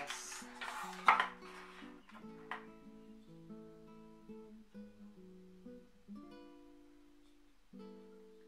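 Acoustic guitar background music with plucked notes. Over it, clear plastic packaging crinkles for the first two seconds, with a sharp snap about a second in as the blister pack is opened.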